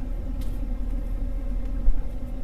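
Steady low vehicle rumble heard inside a pickup truck's cab, with a brief low thump near the end.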